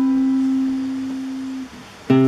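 Nylon-string classical guitar: a single plucked note rings on and slowly fades, then is cut off near the end.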